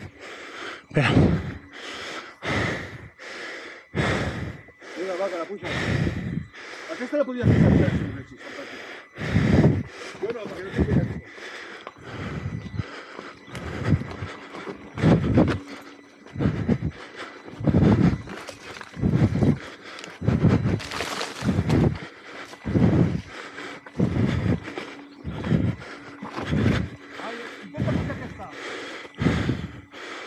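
A person breathing hard and fast from exertion on a steep uphill climb, huffing and puffing about once a second with some voiced, grunting breaths.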